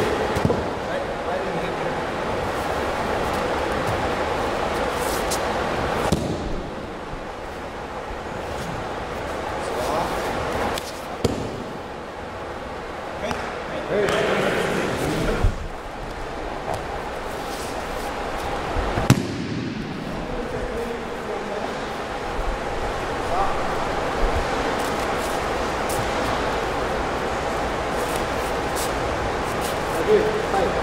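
Bodies hitting a wrestling mat in breakfalls as a partner is thrown again and again: several sharp slaps and thuds spread through, over steady room noise and low voices.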